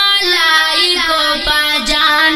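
A boy singing a Pashto naat solo, holding long notes that bend and turn in pitch.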